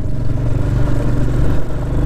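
Royal Enfield Hunter 350's single-cylinder engine running at a steady, even pace under way, heard from on the bike.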